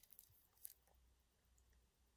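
Near silence, with a few faint clicks in the first second, the loudest about two-thirds of a second in, as the stainless steel watch and its bracelet are handled.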